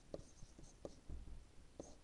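Faint scratching and a few light taps of a stylus writing a word on a digital writing surface.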